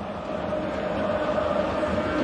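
Football crowd chanting in the stadium stands, a mass of voices holding a sung note, growing gradually louder.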